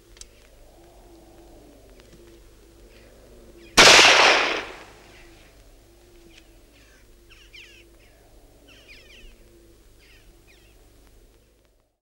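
A single rifle shot about four seconds in, sharp and loud, its echo dying away over about a second.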